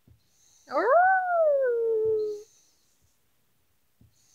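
A small long-haired dog gives one howl of under two seconds, its pitch leaping up at the start and then sliding slowly down.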